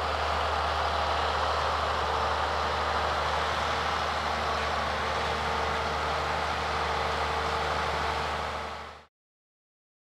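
Engine of a Sands Vision self-propelled crop sprayer running steadily with a low hum as it drives across the field spraying, fading out about nine seconds in.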